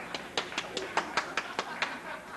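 Steady hand clapping, about five claps a second, with crowd voices underneath.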